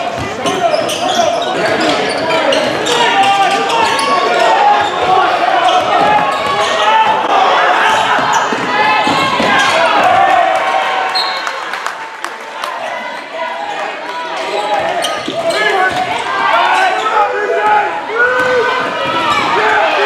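Live basketball game in a gym: a ball bouncing on the hardwood court, sneakers squeaking and players and spectators calling out, echoing in the hall. It is a little quieter for a couple of seconds past the middle.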